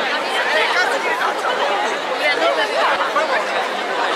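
Dense street crowd talking all around: many overlapping voices chattering at once, steady throughout, with some closer voices standing out.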